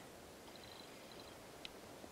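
Near silence: quiet outdoor background with a faint, high, rapid trill for under a second and a single small click about one and a half seconds in.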